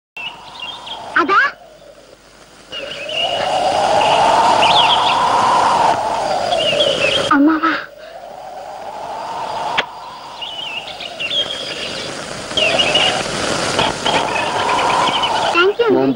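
Rushing, whistling wind on a film soundtrack, swelling and dying away twice, its whistle rising and then falling in pitch each time. Birds chirp over it throughout.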